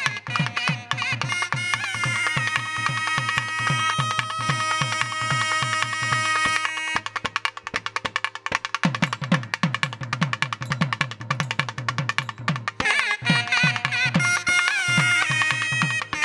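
Nadaswaram ensemble: two nadaswarams playing a Carnatic melody together over fast, dense thavil drumming. The drums stop for about two seconds near the middle while the pipes hold on, then come back in.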